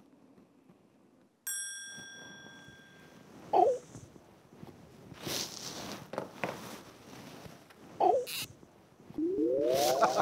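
A bright chime rings once, about a second and a half in, and fades out. Then come rustling of bedding and small knocks as a man stretches off a mattress to reach the floor. Two short sliding tones, one in the middle and one near the end, are the loudest sounds.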